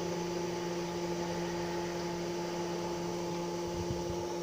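Water pump of a solar-panel cooling setup running with a steady hum. It runs a little louder because a filter has been fitted in front of it.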